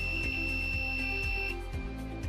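Piezo buzzer module sounding a steady high-pitched tone as an over-voltage warning: the supply is above the 6 V limit. It cuts off about three-quarters of the way through as the voltage drops back below the limit.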